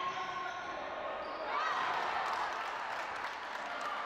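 Live court sound of a women's basketball game in a large, mostly empty hall: scattered ball bounces and footfalls on the court, mostly in the second half, with players' voices.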